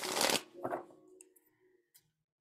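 A deck of tarot cards being shuffled by hand: a short burst of cards sliding over one another at the start, then a smaller one a little later.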